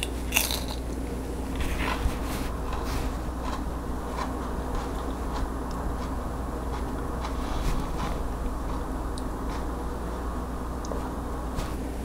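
Raw Marconi red pepper being bitten and chewed, with crisp crunches. There is a sharp knock about half a second in, and a steady low hum runs underneath.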